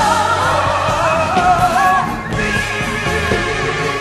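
A gospel song: a high solo voice sings a wavering, ornamented line that steps up in pitch about two seconds in, over instrumental accompaniment with sustained low bass notes.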